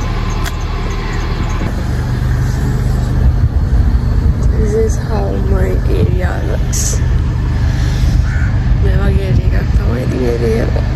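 Wind buffeting the phone's microphone, a low rumble that grows stronger about two seconds in. A woman's voice comes in short snatches over it.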